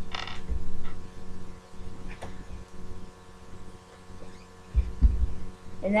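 Scattered low thumps and rumbling under a steady low hum, with a brief high-pitched sound right at the start.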